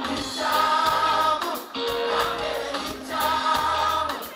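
Live gospel worship song: voices singing together in chorus over a band, in long held phrases.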